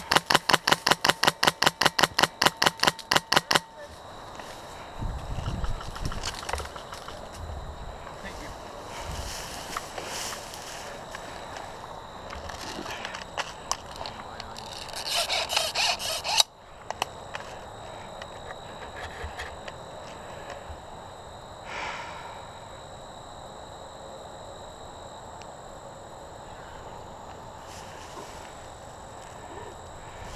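Airsoft rifle firing a rapid full-auto burst of about three and a half seconds, an even string of sharp shots. It is followed by rustling and movement through tall grass.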